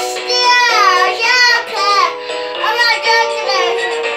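A toddler sings into a toy electronic keyboard's microphone, her voice sliding up and down in pitch over steady held keyboard notes.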